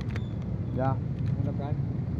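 Steady low background rumble, under a brief spoken "ya" and a few faint clicks.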